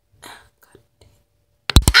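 Faint breathy whisper, then near the end a quick run of loud knocks and bumps as a hand handles the phone close to its microphone. A voice starts an exclamation right at the end.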